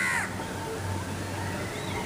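Crows cawing faintly, with a drawn-out call in the second half, over a steady low hum.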